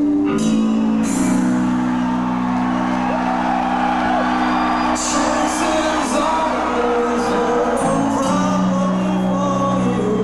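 Live heavy rock band playing: long held guitar and bass notes with a sung vocal line over them, and cymbal crashes about halfway through.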